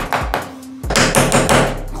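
Combination pliers used as a hammer, tapping a plastic wall plug into a drilled hole in a wall: a quick series of knocks, about four a second, a short pause in the middle, then another run.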